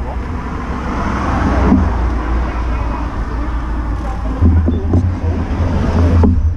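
Road traffic noise: a passing motor vehicle swells over the first second and a half and drops away suddenly just under two seconds in, over a steady low rumble.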